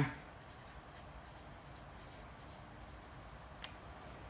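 Faint scratching of a pen writing on paper, in short irregular strokes, with one small click near the end.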